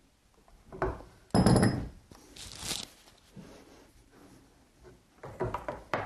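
A hand-held router being handled and set up with its cove bit: a knock, then a heavier thunk with a brief metallic clink about a second and a half in, a short hiss, and a few light clicks near the end.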